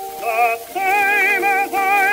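A tenor voice singing with a wide vibrato over sustained orchestral chords, from an acoustic-era 78 rpm record, thin and narrow in range with faint surface hiss. A brief break before one second in is followed by a new phrase.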